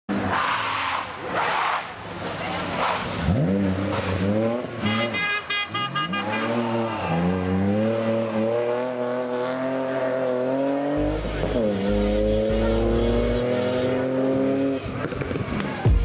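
BMW 3 Series rally car at full throttle on tarmac, its engine revving up and dropping back several times through the gears as it slides through a corner, with tyre noise.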